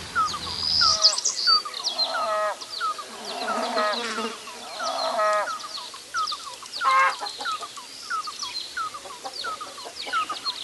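Domestic hen clucking: about five drawn-out clucks spread a second or so apart. Behind them runs a steady series of short, even chirps, about two a second.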